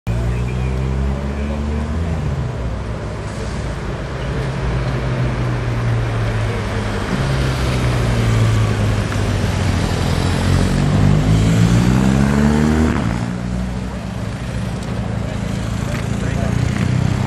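Motorcycle engines running; one climbs in pitch as it accelerates, then drops suddenly about four-fifths of the way through.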